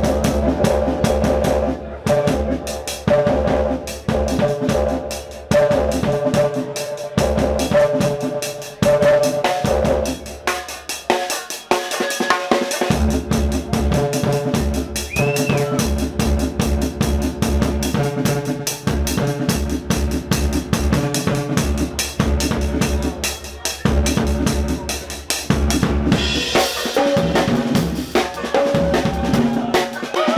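Live drum kit played fast in a drum and bass groove, busy snare and bass drum with rimshots, over a deep sustained bass line. The groove drops out briefly near the middle and then picks up again.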